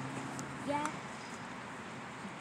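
Speech: a short low hum, then a brief spoken "yeah", over a steady background hiss.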